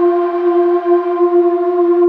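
Electronic music: a single synthesizer note held steady, with a hiss layered over it that drops away at the end.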